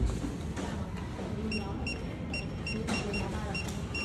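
Rapid electronic beeping, short high beeps about three to four a second, starting about a second and a half in, over a steady low background murmur.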